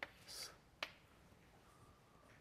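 Near silence with two sharp clicks of chalk tapping on a blackboard, one at the start and one just under a second in, and a short soft hiss between them.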